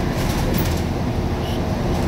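Steady low rumble with no clear pattern.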